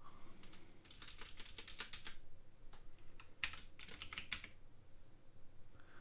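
Computer keyboard typing: two quick runs of keystrokes, each about a second long, with a few single taps between them.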